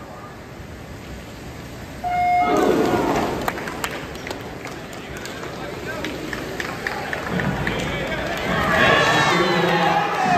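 An electronic starting beep sounds about two seconds in, a short steady tone. Then a crowd of teammates cheers and shouts over the splashing of backstroke swimmers, and the cheering grows louder near the end.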